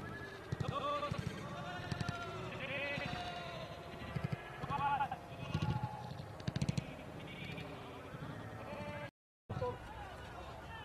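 Indistinct voices of several men calling out over one another on an open pitch, with a few short sharp knocks around the middle.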